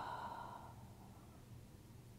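A woman's slow, audible exhale during a yoga stretch, fading out within the first second and leaving near silence.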